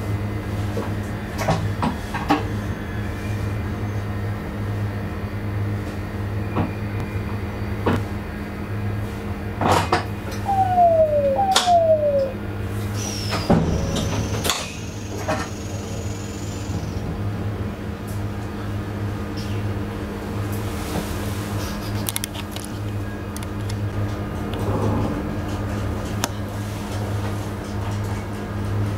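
Train cab standing at a platform: a steady low engine hum with scattered clicks and knocks. Two short falling tones sound about ten and eleven seconds in, and a brief high falling tone near the middle.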